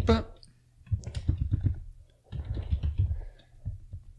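Typing on a computer keyboard: two quick runs of keystrokes, the first starting about a second in, the second just past halfway.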